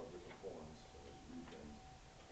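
Faint, indistinct speech with a thin steady hum underneath.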